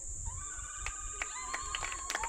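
Steady high chirring of insects, with a long, drawn-out high tone starting just after the start and holding level, joined by a second tone about halfway through, and a few faint clicks.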